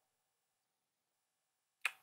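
Near silence, broken near the end by one short, sharp click just before speech resumes.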